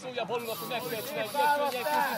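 Several men's voices calling and talking over one another, with a steady hiss that comes in about half a second in.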